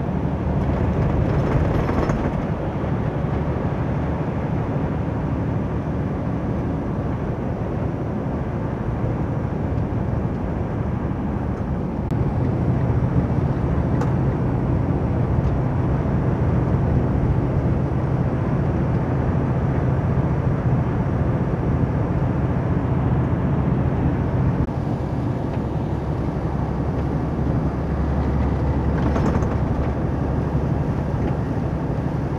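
Interior of a semi-truck cab at highway speed on a wet road: a steady diesel engine drone with tyre and road noise. The engine hum grows stronger about twelve seconds in and eases back about five seconds before the end.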